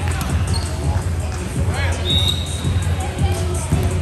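Volleyballs bouncing on a hardwood gym floor, with short high sneaker squeaks about two seconds in, all echoing in a large indoor sports hall.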